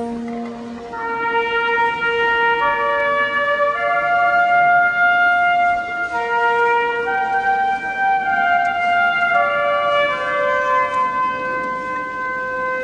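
School wind band of brass and woodwinds playing a slow tune in long held notes and chords, which change every second or two.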